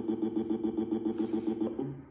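A text-to-speech cartoon voice drawing its 'no' out into a fast stutter on one steady buzzing pitch, about eight pulses a second, played through a computer's speakers; it cuts off shortly before the end.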